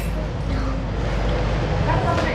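Steady background noise of a busy café dining room: an even low rumble with faint distant chatter and no distinct events.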